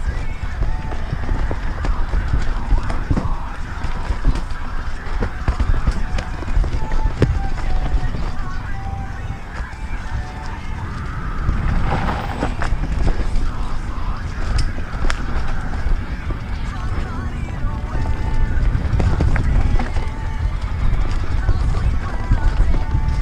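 Norco Aurum downhill mountain bike descending a rough trail at speed: constant wind rumble on the microphone with frequent rattles and knocks from the bike over rocks and roots.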